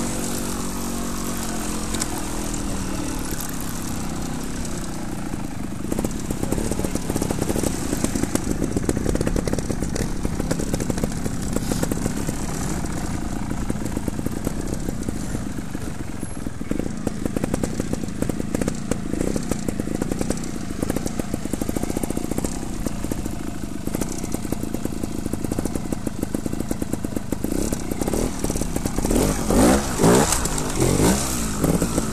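Trials motorcycle engine running close to the camera, its revs falling in the first few seconds, then short, uneven throttle blips at low speed, and a rev rising sharply near the end.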